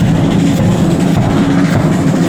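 Military marching band with brass and drums playing at close range, blurred into a loud, dense rumble in which the melody is barely picked out. The sound changes abruptly at the start.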